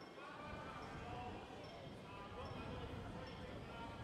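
Faint chatter of a crowd of people talking, low in level.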